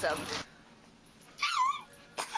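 A woman's short, high-pitched squeal, wavering down and up in pitch, about a second and a half in.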